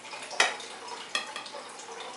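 Table knife clicking against a china plate: one sharp tap about half a second in, then two lighter ticks about a second later.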